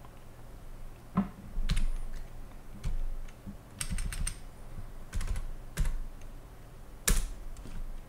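Computer keyboard keys pressed one at a time: a handful of separate key clicks spread over several seconds, the loudest one near the end.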